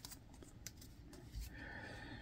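Faint handling of a stack of trading cards: a single light click about two thirds of a second in, then soft sliding and rustling of the cards near the end.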